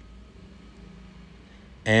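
A pause in the talk with only a faint, steady low hum of room tone; a man's voice comes back in near the end.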